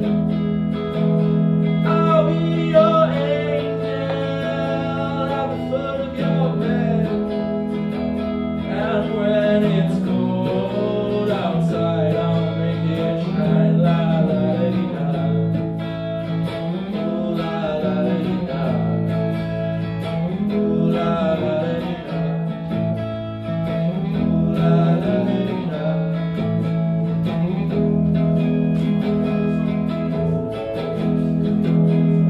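A man singing a song live into a microphone while playing a solid-body electric guitar.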